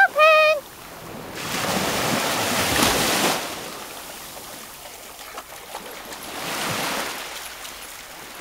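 Small sea waves washing in over the shallows in two swells, the second near the end, over a steady lower wash, with a springer spaniel splashing through the water. A short high-pitched whine at the very start.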